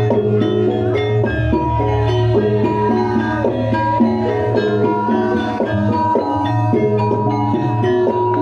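Live Javanese gamelan music for a Lengger dance: quick, many-note pitched melodies on struck metal keys over a held low tone, steady and continuous.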